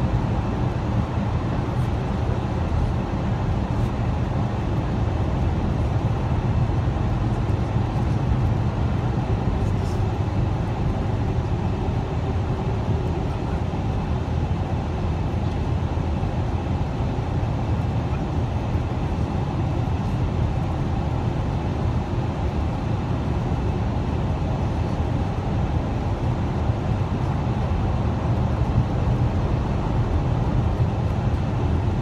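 Steady road and engine noise heard inside a car cruising at freeway speed, a constant low rumble that does not change.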